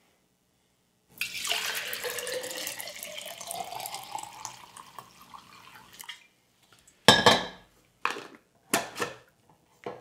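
Yeast starter poured from a glass flask into a glass mason jar, the splashing rising steadily in pitch as the jar fills. About a second after the pour stops comes a loud knock of glassware on the counter, then a few lighter clinks.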